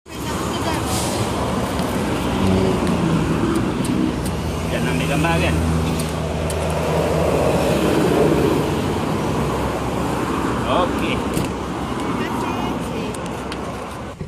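Road traffic noise with a motor vehicle's engine hum running for several seconds in the middle, under people talking.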